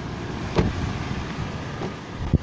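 The rear door of a Toyota 4Runner being shut, a single solid thump about half a second in, over steady low outdoor background noise.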